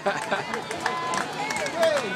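A crowd counting down aloud together, with some high voices among them, over the footfalls of a runner on a treadmill.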